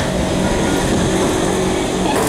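Steady rumble and hum inside an MRT train carriage at a station stop while the doors slide open.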